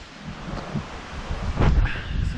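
Wind buffeting the microphone in uneven gusts, with low rumbles.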